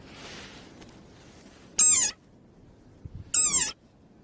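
Desert rain frog giving two short, high-pitched squeaks about a second and a half apart, each wavering and falling in pitch: its defensive distress call. A soft hiss comes before them in the first second.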